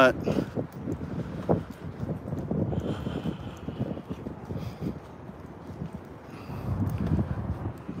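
Wind buffeting a phone's microphone outdoors: an uneven low rumble that swells a little near the end.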